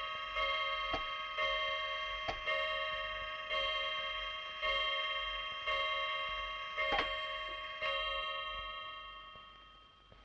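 Clock striking the hour of nine: a bell-like chime struck about once a second, eight strikes here after one just before, the last one ringing away and fading near the end. A few sharp clicks sound in between.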